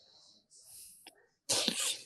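A single loud sneeze, breaking in suddenly about one and a half seconds in and lasting about half a second.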